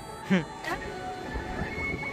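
Soft background music, with a puppy's short whimper about a third of a second in.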